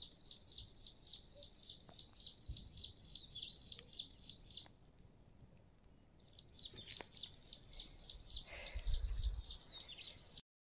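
A bird singing a fast, high trill of evenly repeated notes in two long runs, with a break of about a second and a half in the middle. A low rumble comes in near the end.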